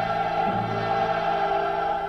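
Classical choral music: a choir and orchestra holding sustained chords, with a soprano voice, in an old recording.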